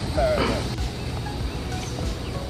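Outdoor ambience: a steady low wind rumble on the microphone, with faint distant voices early on.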